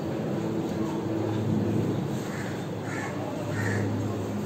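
A bird calling three times in the second half, short calls about two-thirds of a second apart, over a steady low hum.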